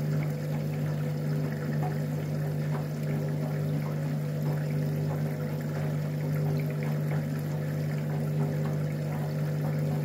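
Candy EcoMix 20 front-loading washing machine tumbling a load of towels in water: a steady low hum with the irregular swish and slosh of water and wet laundry in the turning drum.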